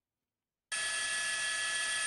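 Dead silence, then less than a second in a steady electronic drone of several held tones starts abruptly and holds at an even level.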